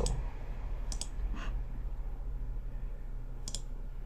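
A few scattered single clicks of a computer mouse button, over a low steady hum.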